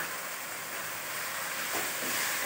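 Minced chicken and chopped tomatoes frying in oil in a wok, a steady sizzle.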